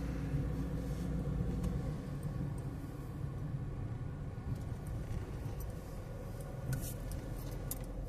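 Inside a moving car's cabin: steady low engine and tyre rumble as the car drives slowly, with the deepest hum easing about two seconds in and a couple of light clicks near the end.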